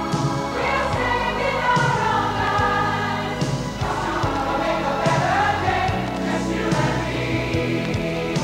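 Soundtrack music: a pop-gospel ballad sung by a choir of voices over band accompaniment with a steady beat.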